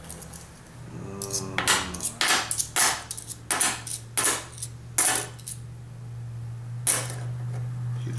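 US half-dollar coins clinking as they are set one at a time onto a small stack on a wooden table: about seven separate metallic clinks at irregular intervals. A steady low hum runs underneath.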